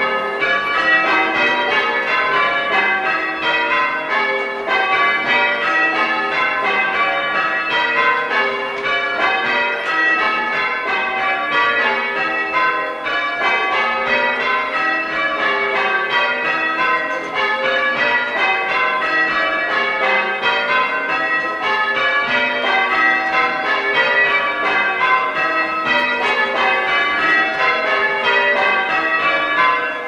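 A ring of six church bells being rung full-circle with ropes, one bell striking after another in a steady, continuous sequence, heard from the ringing chamber beneath the bells.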